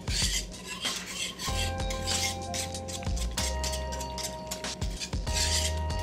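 Wire whisk scraping and rattling against a metal saucepan in rapid repeated strokes, whisking xanthan gum into a thick tomato-based sauce as it thickens.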